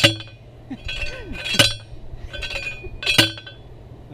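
Hand post driver slammed down onto a fence post three times, about a second and a half apart, each blow a sharp metallic clank that rings briefly.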